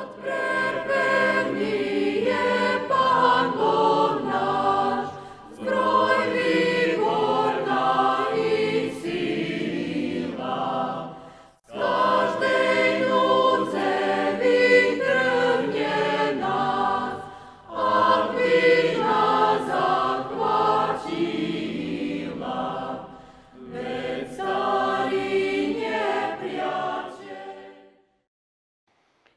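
A choir singing, in phrases of about six seconds with short pauses between them.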